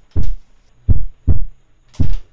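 Heartbeat sound effect: loud, deep lub-dub thumps in pairs, about one heartbeat a second.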